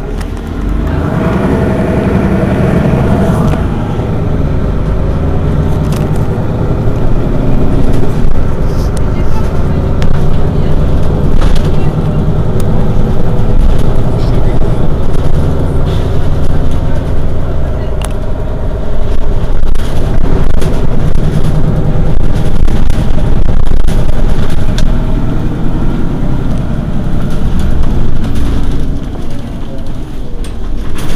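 Diesel engine of a Mercedes-Benz Citaro city bus running, its drone rising and falling in level several times as the load changes, with a few short knocks.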